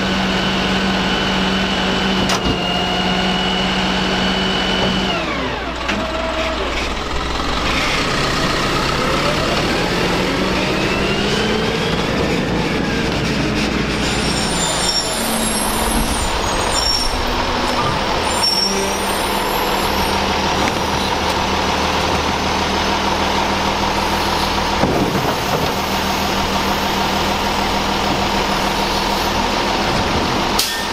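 Garbage truck diesel engine and hydraulics running steadily for about five seconds. An automated side-loader garbage truck follows, its engine rising and falling in pitch as it pulls up, then running steadily as its arm reaches out to grab a cart, with an air-brake hiss.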